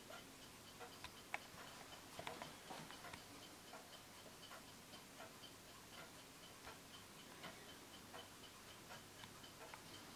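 Winterhalder & Hofmeier drop-dial regulator wall clock's deadbeat fusee movement ticking faintly and steadily as the pendulum swings.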